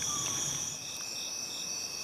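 A steady, high-pitched insect chorus, a continuous trill.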